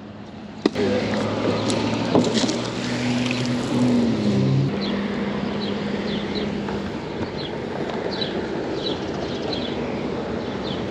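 Electric trolling motor switching on about a second in and running steadily with water noise, its hum dipping in pitch midway. Faint short high chirps come in over the second half.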